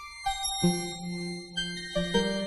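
Sequenced notes from a basic FM software synthesizer, driven by a difference-and-repetition sequencer that varies the note pattern. Several held tones overlap, and new notes enter about a quarter second in, again just past half a second, and near the end.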